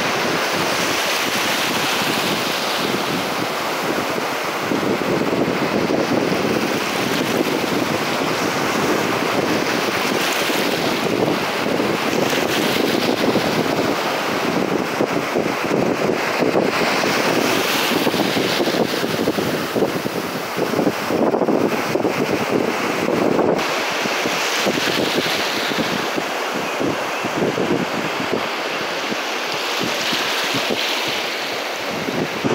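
Shallow surf washing up a sandy beach in a steady, swelling and easing rush, mixed with wind buffeting the microphone.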